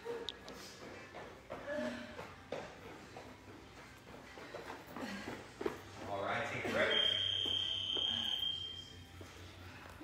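Faint, indistinct voices, a little louder after about five seconds in, with a steady high-pitched tone held for about two seconds near the end.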